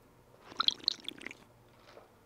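Short wet slurping and swallowing sounds as a cold drink is sipped through a plastic straw, in a cluster of little clicks about half a second in that die away within a second.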